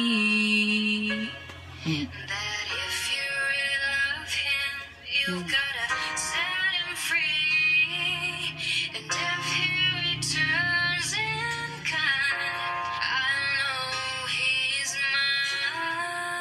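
A female singer's voice singing a slow ballad over instrumental accompaniment, with smooth glides and runs between notes.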